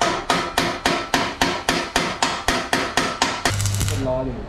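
A hammer striking metal in a steady, even rhythm of about three and a half blows a second, each blow ringing. Near the end the hammering stops and the steady hum of an electric arc welder takes over.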